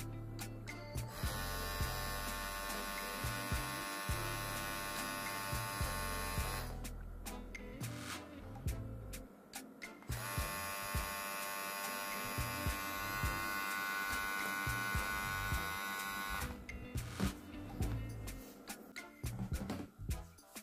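VGR V961 cordless hair trimmer running in two stretches of about five and six seconds, with a steady buzz from its motor and blade and a pause of a few seconds between. Its motor turns at just under 6,000 RPM, which the owner finds too slow and underpowered for a trimmer.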